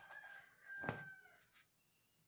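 A rooster crowing faintly, one long drawn-out call lasting about a second and a half. A soft knock comes about a second in.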